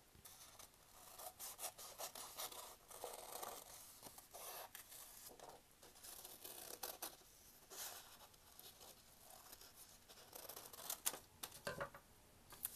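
Scissors cutting through folded paper: a run of faint, irregular snips and paper rustles.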